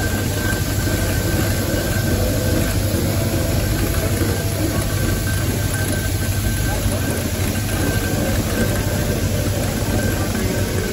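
Steam traction engine ticking over with a steady low rumble and hiss, voices of people nearby mixed in.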